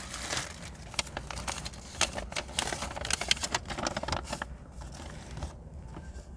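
Crinkling and rustling of a white pharmacy bag being opened by hand and a folded paper sheet pulled out, in quick irregular crackles that die down about four and a half seconds in.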